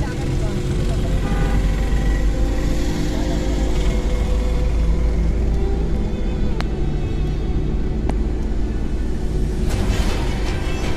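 Steady low rumble of a car's engine and tyres heard from inside the cabin while driving along a winding road.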